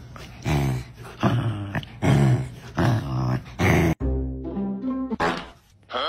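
A dog making a run of about five short vocal sounds over background music.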